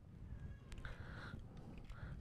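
Quiet pause with faint room tone, a faint click, and then a short, faint high-pitched cry about a second in.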